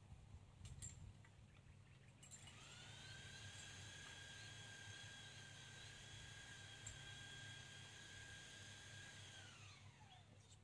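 Faint high-pitched whine of a small motor. It rises in pitch as it spins up about two seconds in, holds steady for about seven seconds, then falls away as it winds down near the end, over a low steady hum.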